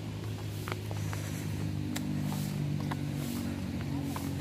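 An engine running steadily, a low hum whose pitch shifts slightly partway through, with a few scattered light clicks and taps.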